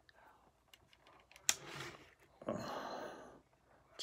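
A man breathing between sentences: a short sharp breath about a second and a half in, then a longer breathy exhale like a sigh, with a few faint clicks around them.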